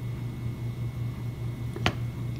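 A steady low hum, faintly pulsing, under a thin high whine, with one sharp click near the end.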